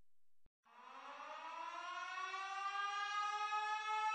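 A siren starts about two-thirds of a second in, its pitch rising steadily as it winds up and then levelling off into a steady, loudening tone.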